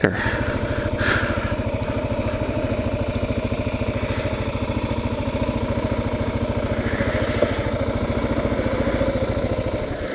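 2009 Kawasaki KLR650's single-cylinder engine running at low speed as the motorcycle rolls along, a steady, even, rapid pulse of firing strokes.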